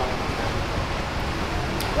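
Steady background noise: an even low rumble and hiss with no voices, and a small tick near the end.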